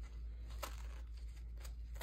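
Kitchen knife cutting through a Gala apple: a few short, faint cuts.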